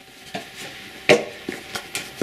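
A few short knocks and taps of a cardboard pen box being handled and set down, the loudest about a second in.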